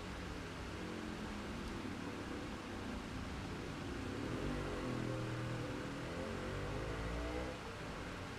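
Faint steady background hum, with a low motor drone that swells about halfway through and fades shortly before the end.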